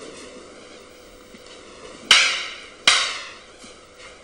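Two sharp clacks of wooden training sticks striking each other, a little under a second apart, each ringing on briefly in an echoing hall.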